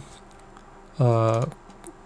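A man's voice holding a drawn-out hesitant "uh" for about half a second in the middle, with a few faint clicks near the end.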